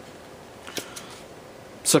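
A few faint, light clicks of a plastic toy dart pistol being handled as a foam dart is pushed into its barrel, a little past the middle; a man's voice starts near the end.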